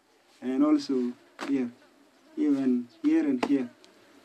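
Speech only: a man's voice in several short phrases, in words the recogniser did not write down.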